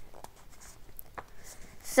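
A quiet pause in a woman's spoken reading: faint room noise with a few small clicks and rustles, then her voice starts again at the very end.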